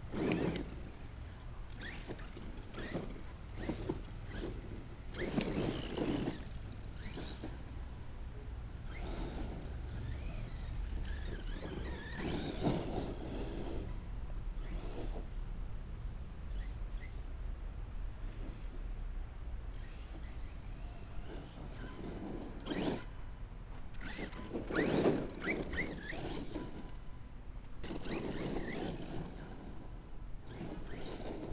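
Electric RC monster truck running in several short bursts of throttle on a dirt path, over a steady low rumble of wind on the microphone.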